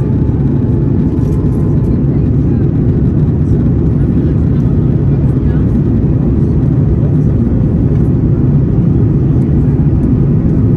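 Steady low rumble of an Airbus A330-900neo airliner's cabin in flight: engine noise and air rushing past the fuselage, heard from a window seat over the wing.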